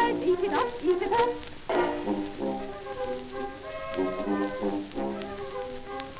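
An early 78 rpm record playing ragtime: the band's instrumental passage between sung verses, with brass carrying held notes.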